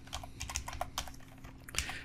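Computer keyboard typing: a quick, uneven run of key clicks, several keystrokes a second.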